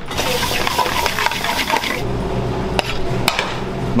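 A metal spoon scraping and stirring vegetable biryani in a steel pan, a dense rustling hiss for about two seconds. Then come a few sharp metal clinks as the spoon knocks against the pan and bowls.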